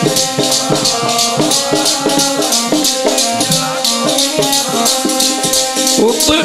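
Kirtan accompaniment: a harmonium playing a sustained melody over a quick, steady rhythm of jingling percussion strikes.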